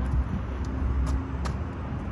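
Steady low rumble of city road traffic, with one sharp tap about a second and a half in.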